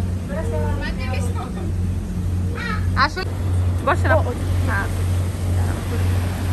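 Steady low drone of a lake passenger boat's engine, with people's voices speaking over it in short bursts.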